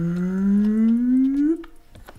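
A man's voice making one long, drawn-out vocal sound that rises steadily in pitch and cuts off about a second and a half in.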